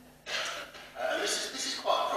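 Speech: a man preaching into a lectern microphone.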